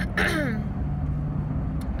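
A woman clearing her throat once, a short sound falling in pitch in the first half second, with her hand over her mouth. A steady low hum of the car's idling engine runs underneath.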